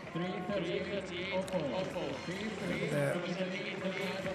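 Stadium ambience at an athletics track: overlapping voices from the spectators in the stands carry on steadily, with no single clear speaker.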